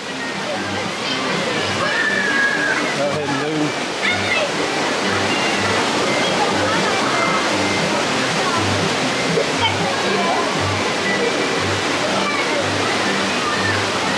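Waterfall rushing, a steady loud wash of water noise, with background music underneath carrying a low beat about once a second.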